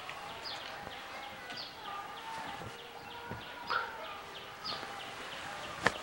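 Birds chirping: short, high, falling chirps repeated about once a second. A single sharp click just before the end.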